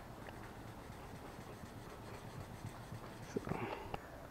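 Faint scratching of fine sandpaper on a short, flat wood stick, rubbed by hand in small strokes over a spot in cured clear coat to level a high spot left by touch-up clear over a solvent pop.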